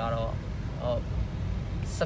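Steady low rumble of a car driving, engine and road noise heard from inside the cabin.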